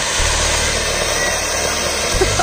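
Ground firework fountain (anar) spraying sparks with a steady, even hiss.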